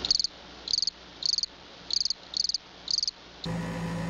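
Cricket-chirping sound effect: six short, high chirps, each a quick trill, spaced about half a second apart. This is the stock 'crickets' gag for an awkward silence.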